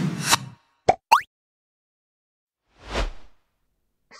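Editing sound effects at a scene transition: a sharp hit at the start, then a short pop with a quick rising sweep about a second in, and a whoosh that swells and fades about three seconds in.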